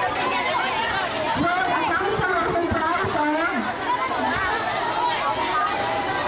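A crowd of children chattering and calling out, many voices overlapping with no single voice standing out.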